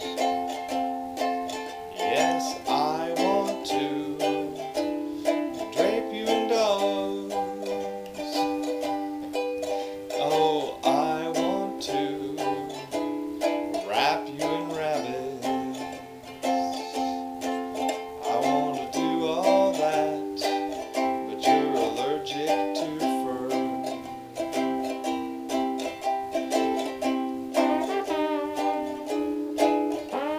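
Ukulele strummed in a quick, steady rhythm, its chords changing every second or two: an instrumental break between the verses of a song.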